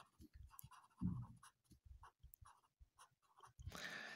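Faint scratching of a pen writing words on paper, in many short strokes, with a soft rush of noise near the end.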